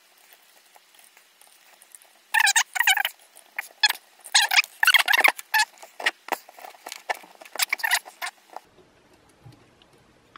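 Black electrical tape being pulled off and wrapped around a wire: a run of short, scratchy, crackling bursts, some with a thin squeak. They start about two seconds in and stop about a second and a half before the end.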